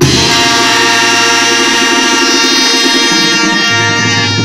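Mexican banda brass section (trumpets, trombones and tuba) holding one long chord that starts sharply and stays steady, with the lowest note dropping out near the end.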